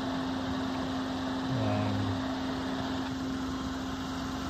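A Ford Fiesta's 1.0-litre EcoBoost three-cylinder petrol engine idling steadily, a constant low hum.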